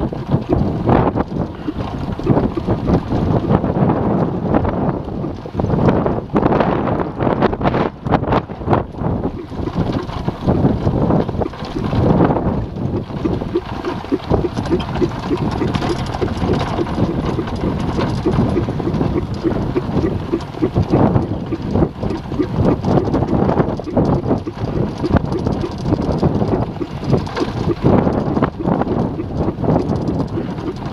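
Wind buffeting the microphone on a moving horse-drawn cart, with the cart's irregular rattling and knocking as it jolts along a dirt track.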